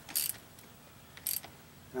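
Hand socket ratchet clicking in two short bursts about a second apart as bolts are run up snug.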